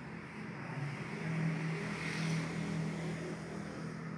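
A low, steady machine hum with a clear pitch over a noisy rush, growing louder about a second in and easing off near the end.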